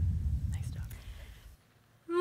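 Low rumble of an animated-logo intro sound effect fading out over about a second and a half, leaving near silence.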